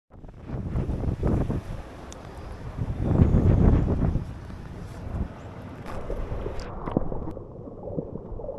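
Wind buffeting an action camera's microphone over choppy sea water, with strong low gusts about a second in and again around the middle. Near the end the sound suddenly turns dull and muffled as the camera is in the water.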